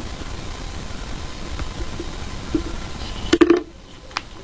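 Small handling clicks as a small electric motor is worked off a cardboard face plate, with a few faint ticks and then a short burst of sharper clicks near the end as it comes free, over a steady low background hum.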